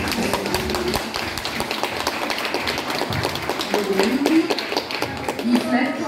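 Audience applauding, a dense scatter of hand claps with voices mixed in, as the dance music ends within the first second.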